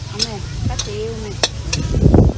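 Metal spatula stirring fried noodles in a wok, sizzling, with several sharp clanks of the spatula against the wok.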